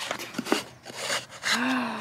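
Wooden sliding lid of a cigar box scraping in its grooves with a few light clicks as it is worked open, then a short voiced gasp near the end as the lid comes off.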